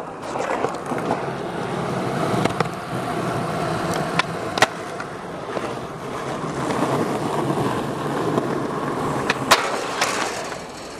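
Skateboard wheels rolling on concrete, a steady rumble, broken by a few sharp clacks of the board: two at about four seconds in and two near the end.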